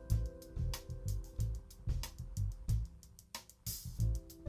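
Live smooth-jazz band: drum kit keeping a steady groove, electric bass and held keyboard chords, with a cymbal crash near the end.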